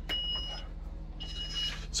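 A bus's cab warning beeper sounding in steady high beeps about once a second, over the low, steady note of the bus's diesel engine idling. The air pressure on tank one is very low.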